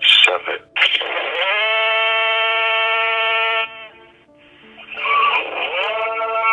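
Eerie electronic tones coming down a phone line on speakerphone. There are short broken sounds at the start, then a long buzzy tone slides up into pitch, holds for about two and a half seconds and cuts off, and another rising tone begins near the end.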